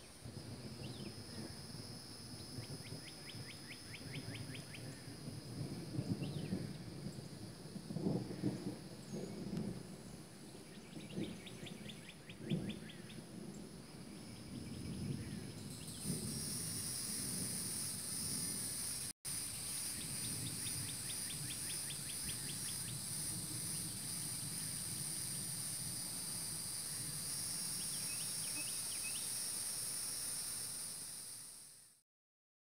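Low, irregular rumbles of distant thunder through the first half, while a songbird sings short, rapid trills several times. About halfway in, a steady hiss of rain starts suddenly and carries on, the bird still trilling over it.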